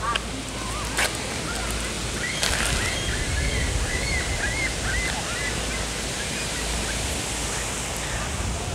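Steady wind buffeting the microphone, with a low rumble. Through the middle comes a run of short, high chirps, several a second.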